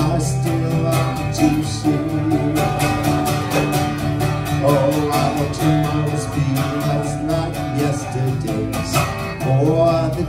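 Acoustic guitar strummed in a steady rhythm, with a man's voice singing long held notes over it between sung lines.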